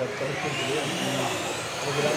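Radio-controlled 2WD model cars racing in a hall, their motors whining and rising and falling in pitch as they accelerate and brake, with voices in the background.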